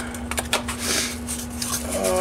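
Cardboard flaps of a small box being pulled open by hand: irregular rustling and scraping with a few light clicks, loudest about half a second in. Under it runs a steady low hum from a running furnace.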